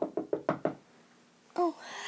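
A quick run of about seven knocks in under a second, like knuckles rapping on a hard surface, standing in for a knock at the door.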